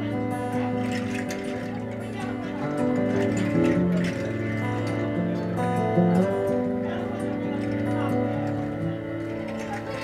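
Live music: a man singing in the Kalkadunga language over acoustic guitar, with a low steady drone underneath.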